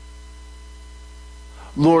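Steady low electrical mains hum. A man's voice comes in near the end with the word "Lord".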